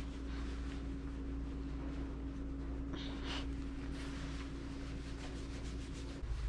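Terry-cloth towel rubbing a small wet dog dry, a soft scratchy rustling, over a steady low hum. A short breath sound comes about three seconds in.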